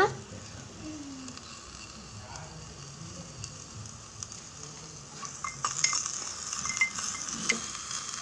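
Tomato and dal mixture sizzling in a small clay pot over a wood fire: a steady hiss that grows louder about five and a half seconds in, with a few small clicks.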